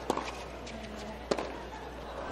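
Tennis ball struck during a rally on a hard court: two sharp pops a little over a second apart, one just after the start and one past halfway, over a low arena background.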